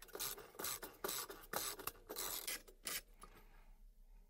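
Half-inch drive ratchet with a T30 Torx bit being swung back and forth on server heatsink screws: a run of short rasping bursts of pawl clicks, irregularly spaced, stopping about three seconds in.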